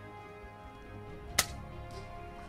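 A single sharp crack of an air rifle shot about one and a half seconds in, over quiet background music.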